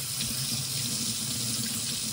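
Kitchen tap running in a steady stream onto an oyster shell held in the hand, splashing into a stainless steel sink as the mud is rinsed off the shell.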